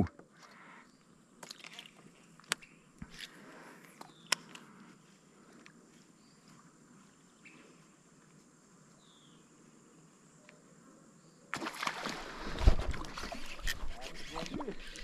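A few faint, sharp knocks and taps on a kayak in the first seconds, then near silence; about eleven and a half seconds in, a louder rough rush of water sloshing and rumbling against the hull sets in and carries on.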